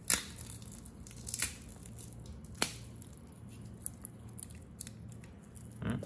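Metal watch bracelets being handled: a few sharp clicks of steel links and clasps knocking together, the strongest three in the first three seconds, then lighter ticks.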